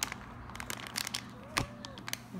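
Crinkling of a sealed plastic packet handled in the hands: a string of irregular sharp crackles.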